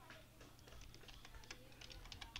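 Faint computer keyboard typing: scattered key clicks that come quicker near the end.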